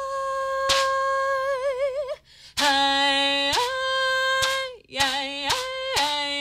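A woman singing unaccompanied, in long held 'hey' phrases. Each phrase starts on a low note, leaps up an octave and is held with vibrato, and there are two phrases with a short break between them. A few sharp percussive hits fall between the notes.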